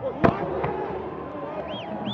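A single sharp thud of a football being struck, followed by voices shouting on the pitch and two short, high chirps near the end.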